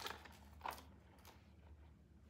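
A key being pushed into a mini shoulder bag: a few faint light clicks and rustles over a low steady hum.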